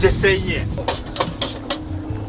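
A brief bit of a man's voice, then scattered small clicks and knocks over a low steady rumble.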